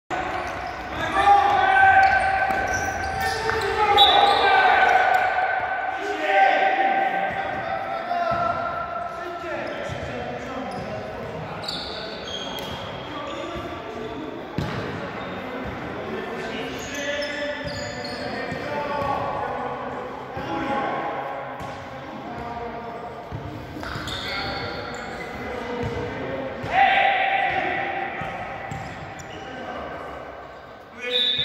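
Indoor futsal being played in a sports hall: players' voices calling out across the court, with the sharp thuds of the ball being kicked and bouncing on the hard floor, all carrying the hall's echo. The loudest calls come in the first few seconds and again near the end.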